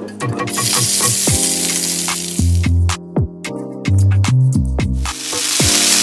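Chicken pieces frying in oil in a non-stick skillet, sizzling as they are turned with a spatula, with background music playing throughout. The sizzle dies down briefly around the middle and returns strongly near the end.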